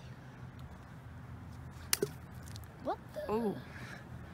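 A small thrown object strikes the thin ice of a frozen pond with a sharp crack about two seconds in, two quick hits close together, breaking through the ice. A short voiced exclamation follows near the end.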